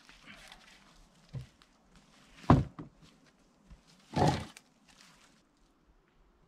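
Short cut sapling sections knocking on wood as they are handled and set down: a soft thud about a second and a half in, a sharp knock, the loudest, a second later, and a longer clatter a little after four seconds.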